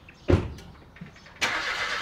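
A car door shutting with a single heavy thump, then a car engine starting up and running near the end.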